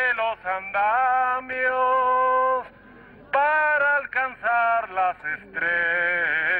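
A man's voice chanting through a megaphone in long, drawn-out phrases, with a short pause about halfway through.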